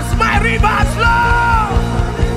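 Live worship band with drum kit and keyboard playing a steady beat while a man sings and shouts into a microphone, holding one long note about halfway through.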